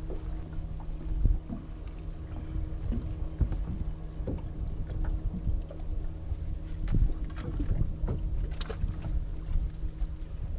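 Wind rumbling on the microphone in a small boat, under a steady low hum, with scattered knocks and bumps of someone moving about in the hull; the loudest knock comes about seven seconds in.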